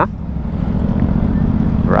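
Steady low rumble of the FKM Slick 400 maxi scooter riding along at low speed, its engine and wind on the microphone, growing a little louder as it gathers speed.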